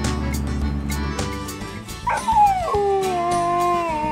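A dog howling: one long howl starting about two seconds in, sliding down in pitch and then holding steady. Background music with a steady beat runs throughout. Before the howl, the low rumble of the John Deere Gator utility vehicle's engine.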